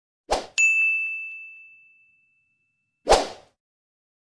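Edited-in sound effects: a brief swish, then a bright bell ding that rings out and fades over about a second and a half, and a second brief swish about three seconds in.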